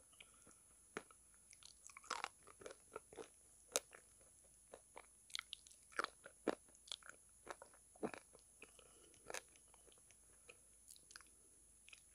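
Close-miked biting and chewing of calabash chalk (ulo, an edible clay) coated in brown cream paste. Irregular sharp crunches come in clusters, with quieter pauses between.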